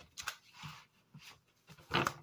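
A deck of cards being shuffled by hand: a few soft taps and a brief sliding rustle, then a sharper snap of the cards near the end.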